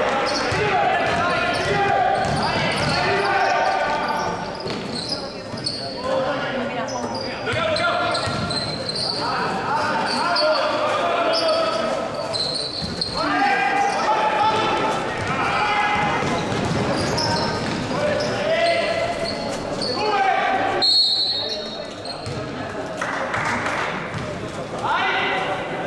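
Basketball game sounds echoing in a sports hall: the ball bouncing and sneakers squeaking on the court, with players' and spectators' voices calling out throughout.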